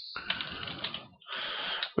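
Typing on a computer keyboard: a quick run of keystroke clicks through the first second, then a short hiss near the end.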